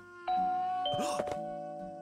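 Apartment doorbell chiming a two-note ding-dong: a higher tone, then a lower one about half a second later, both ringing on and slowly fading.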